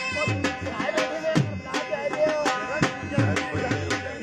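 Punjabi dhol drum beating a driving dance rhythm of about three strokes a second, deep bass strokes mixed with sharp high ones, with a wavering melody played over it.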